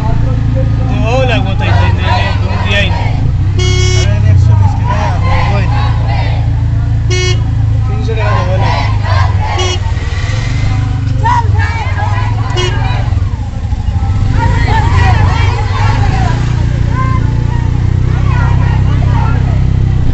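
Small engine of an auto-rickshaw running steadily from inside the cab. Voices from a crowd of marchers alongside shout and talk over it. A vehicle horn toots briefly four times in the first two-thirds.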